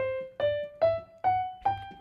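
Piano sound from a digital keyboard playing single notes, climbing the G major scale step by step, five notes at about two and a half a second.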